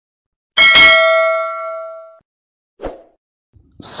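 Bell-like notification ding sound effect: one bright chime that rings out and fades over about a second and a half, followed by a short soft pop.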